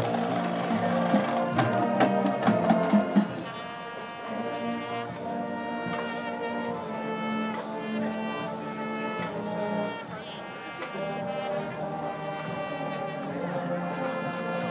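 Marching band playing, its brass section in front: loud with drum hits for the first three seconds, then a softer passage of held brass chords.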